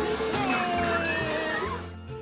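Upbeat arcade background music with a steady repeating bass. Over it, for about a second and a half, there is a loud, high, wavering cry that slides slowly down in pitch.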